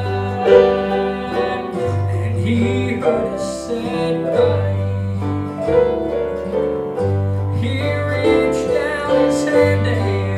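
Live southern gospel song with an F-style mandolin picking over a band, with a long low bass note about every two seconds.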